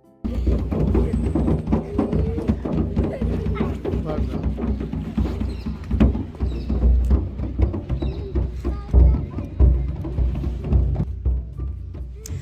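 A large marching-band bass drum struck irregularly by small children, giving deep uneven booms, with voices chattering throughout.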